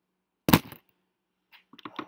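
A single sharp, loud smack about half a second in, followed near the end by a few faint clicks and taps.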